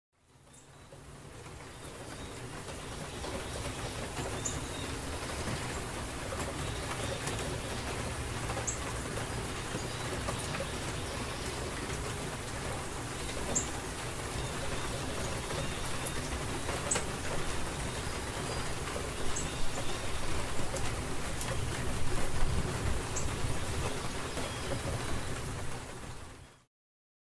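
Steady rain-like rushing noise with a low rumble underneath and a short high chirp every few seconds. It fades in over the first couple of seconds, grows louder near the end with a few sharper knocks, and cuts off suddenly.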